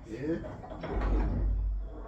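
A tower bell being rung by its rope, with a low rumble from the swinging bell and its rope gear about a second in.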